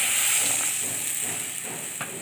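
Water poured into a hot wok of fried dried Bombay duck pieces hisses and sizzles as it flashes into steam. The hiss fades gradually as the pan cools.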